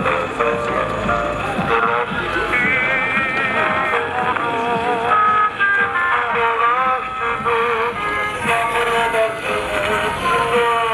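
Horn gramophone playing an old shellac record: a thin, old-time recording of music whose melody wavers in a vibrato, with little treble.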